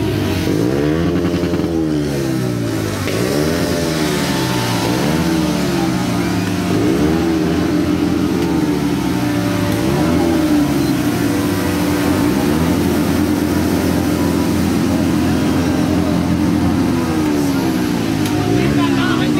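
Motorcycles with their silencers removed, revved hard again and again, the engine pitch sweeping up and down about once a second, then held at a steadier, higher pitch later on.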